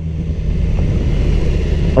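BMW S1000RR inline-four engine running steadily under way at city speed, with the rush of riding wind over it.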